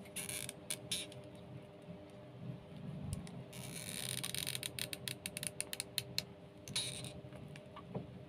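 Close handling sounds of crafting: dry rustling of jute twine under the fingers, and a quick run of light clicks and taps as a hot glue gun is brought in and handled. A faint steady hum runs underneath.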